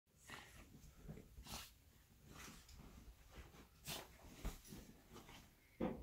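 Faint rustling of sheets and pillows in irregular bursts as a small, wet dog burrows and rubs itself dry in the bedding, with its breathing heard among the rustles.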